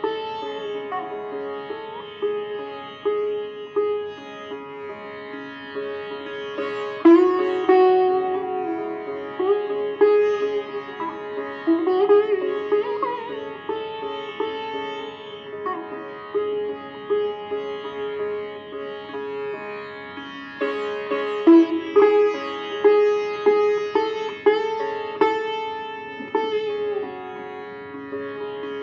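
Solo sitar playing raga Bhairavi: separate plucked notes with sliding pitch bends over a steady drone, and no percussion.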